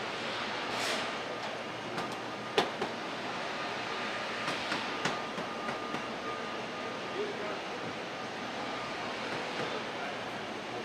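Car assembly plant floor noise: a steady machinery hum and hiss, with a short hiss about a second in, a faint steady whine through the middle, and a few sharp clicks and knocks from parts and tools being handled.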